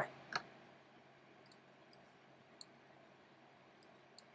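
Sparse computer mouse clicks over quiet room tone: one sharper click just after the start, then four faint light clicks spread over the next few seconds.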